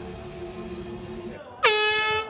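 Quiet background music, then about 1.6 s in a sudden loud, steady air-horn blast that signals the start of the second round of an MMA fight.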